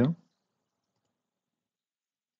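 The end of a spoken word in the first quarter second, then silence.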